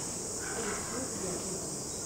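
Crickets trilling in a continuous high-pitched chorus.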